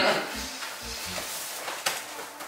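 Fabric rustling as a T-shirt is pulled off over the head, with a couple of low thumps early on and a sharp click near the end.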